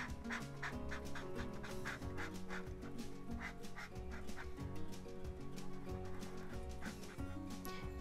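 Tombow ABT PRO alcohol-based marker tip rubbing on canvas in many quick, short strokes as a shape is filled in solid, over soft background music.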